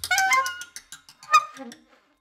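Alto saxophone making short, squeaky notes that bend in pitch, mixed with scattered small clicks, in sparse free-improvised playing. The notes thin out and the sound stops shortly before the end.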